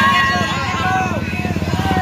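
A crowd of women shouting and screaming excitedly, many voices at once, over the steady pulsing run of several motorcycle engines.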